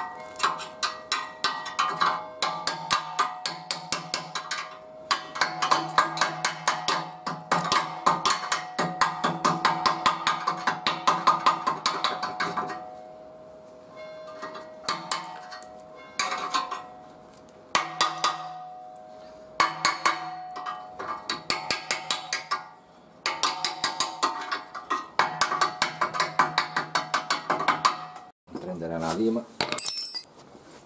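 A hammer strikes a chisel set against a corroded steel ring on a Volkswagen Polo rear axle beam, chiselling the ring out. The blows come in fast runs of about three to four a second with short pauses, and the axle rings metallically under them.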